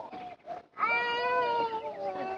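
A long, high drawn-out cry held for about a second and a half, steady in pitch and sinking slightly near the end.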